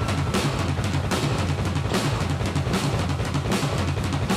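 Loud rock music with a drum kit to the fore, bass drum and snare beating steadily over a heavy bass line. A held guitar note ends just after the start.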